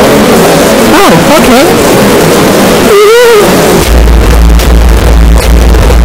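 Heavily distorted, clipped cartoon soundtrack: a character's voice wails with wavering, gliding pitch, then a heavy bass rumble comes in about four seconds in and holds to the end.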